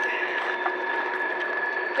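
Small pull wagon rolling over a paved road, its wheels making a steady rolling noise with a constant whine from an axle that is dragging.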